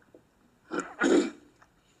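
A man clearing his throat: a short rasp, then a longer, louder one just after it, about a second in.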